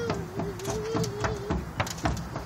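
Footsteps on a footbridge deck: a toddler's and a walking adult's steps, an irregular run of light taps several times a second. A thin, slightly wavering tone sounds over them for the first second and a half.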